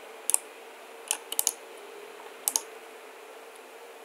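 Scattered clicks of a computer keyboard and mouse, about half a dozen in small clusters, over a faint steady hum.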